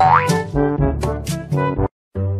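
Comic background music with brass, opened by a rising cartoon boing sound effect; the music cuts off suddenly just before the end.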